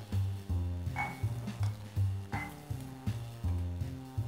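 Background music with a low bass line that steps in pitch about twice a second, and two brief higher notes or knocks about one and two and a half seconds in.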